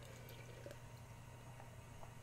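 Near silence over a steady low room hum, with faint sounds of a drink being sipped from a glass.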